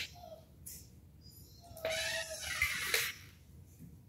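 A dog whining once, a drawn-out cry lasting about a second, bending in pitch, starting about two seconds in.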